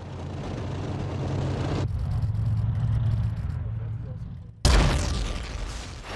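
Tanks and tracked armoured vehicles rumbling steadily as they drive, the noise building slowly. About four and a half seconds in, a towed howitzer fires with a sudden loud boom that dies away over about a second.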